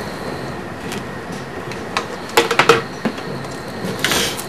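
Steady background noise with a few light knocks and clicks of handling on a workbench as a plastic bottle rig is set in place. There is a short louder pitched sound about halfway through.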